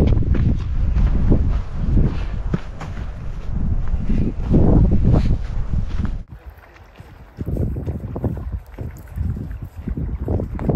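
Loud, gusty wind noise on the microphone, rising and falling. It drops off suddenly about six seconds in, then comes back in softer gusts.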